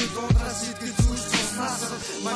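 Hip hop track: a man rapping over a beat with deep, booming kick drum hits.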